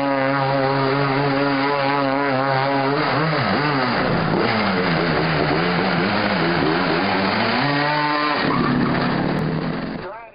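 Mini Outlaw micro sprint car engines racing on a dirt oval: a steady high-revving note for about three seconds, then several engines rising and falling in pitch as they lift off and accelerate through the turns.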